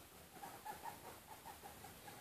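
Guinea pig making faint, short calls in a quick run of about five a second, beginning about half a second in.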